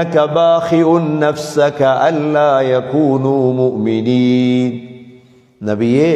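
A man chanting Quranic verses in the melodic recitation style, with long sustained notes. His voice holds one long note about four seconds in, then trails off into a brief pause before it starts again near the end.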